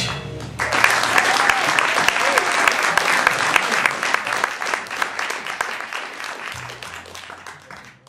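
Audience applause after a live band's final chord: the last of the chord dies away in the first half second, then clapping with some cheering fills the room and fades out near the end.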